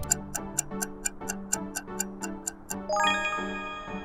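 Quiz countdown-timer sound effect: rapid, even clock-like ticks, about six a second, over background music. The ticks stop nearly three seconds in with a bright ringing chime that marks time up as the answer is revealed.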